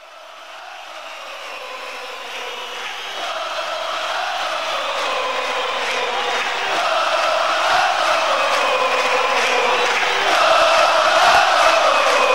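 Soundtrack music fading in, opening with massed chanting voices that grow steadily louder, with a few sharp percussive hits in the second half.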